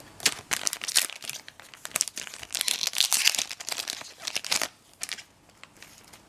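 Trading card booster pack's foil wrapper being torn open and crinkled: a run of crackling rustles that dies down about five seconds in.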